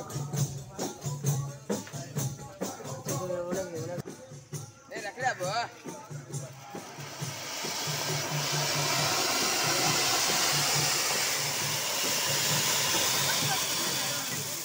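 A procession's drum beat with jingling percussion strikes and voices, then from about seven seconds in the steady loud hiss of ground fountain fireworks (flower-pot crackers) spraying sparks, over the continuing beat.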